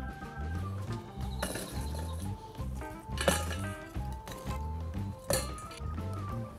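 Background music with a steady bass beat under a simple melody, with two short sharp clicks, about halfway through and near the end.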